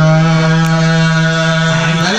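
A man's voice holding one long, steady sung note through a microphone while chanting a khassaide, a Mouride religious poem. The pitch dips slightly near the end.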